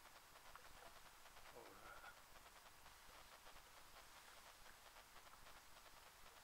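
Near silence: faint background hiss, with one faint, short, curved call about a second and a half in.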